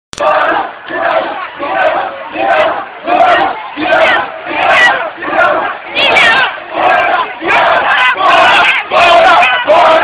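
A crowd of student protesters shouting a chant in unison, in a steady rhythm of about three shouts every two seconds.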